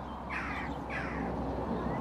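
A bird calling twice, two short calls about half a second apart, each dropping in pitch.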